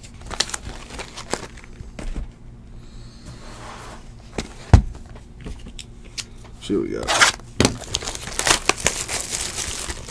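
Cardboard trading-card boxes handled and shuffled on a tabletop mat, with scattered knocks and one sharp knock about five seconds in. In the last three seconds the box's plastic wrapper crinkles and tears as it is being opened.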